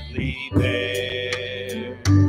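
Live worship music: a sung note held over a sustained bass and guitar accompaniment, with a brief break about half a second in.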